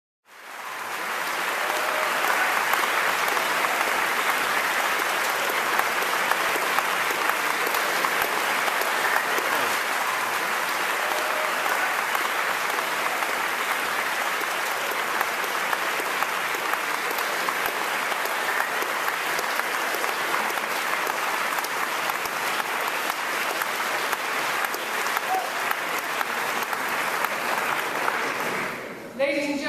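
Sustained applause from a large audience, a dense, even clapping that fades in over the first second and holds steady.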